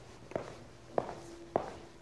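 Footsteps of a man walking across a stage floor: three even steps, a little over half a second apart.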